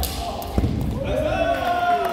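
A sharp thud at the start and another about half a second later, then a drawn-out shouted voice about a second in, ringing in a large hall.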